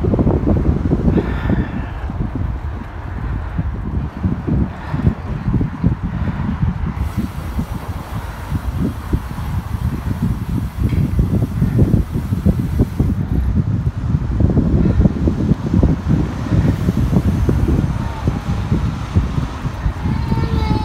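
Wind buffeting the microphone of a camera carried on a moving bicycle: a loud, gusting low rush that rises and falls unevenly throughout.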